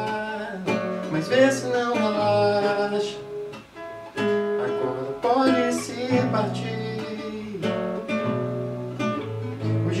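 Nylon-string classical guitar strummed and picked in a song accompaniment, with a man's voice singing along in places. There is a short drop in the playing about three and a half seconds in.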